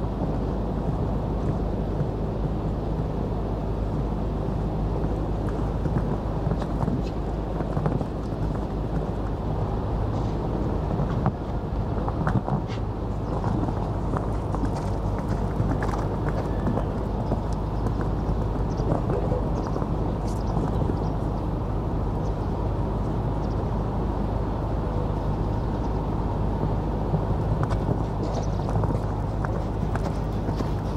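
Hoofbeats of a show jumper cantering on a sand arena, over a steady low background rumble, with a few louder knocks near the middle.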